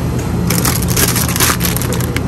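Crinkling of a plastic salad-kit bag as it is grabbed and lifted, a crackly rustle lasting about a second and a half.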